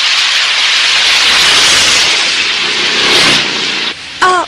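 Heavy rain falling in a steady, loud downpour, cutting off just before the end.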